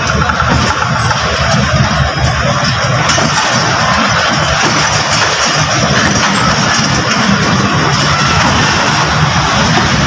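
Passenger coaches of a departing express train rolling past close by: a loud, steady noise of wheels running on the rails.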